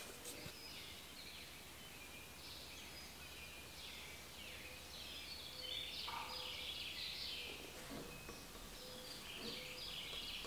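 Faint birdsong over quiet room tone: many short chirps and falling trills repeating throughout.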